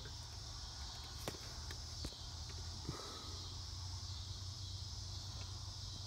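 Steady high-pitched chirring of insects, typical of crickets, with a low hum beneath it. A few faint clicks about one, two and three seconds in come from the rubber breather hose being handled.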